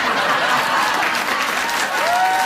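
Studio audience applauding, a steady dense clapping.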